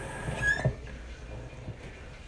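Mouthwash being swished around the mouth, with a couple of short wet sounds and a brief squeak in the first second, then fainter.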